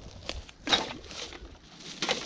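A plastic shopping bag crinkling as litter is put into it, with dry leaves crunching. There are a few light clicks and one louder rustle a little past a third of the way in.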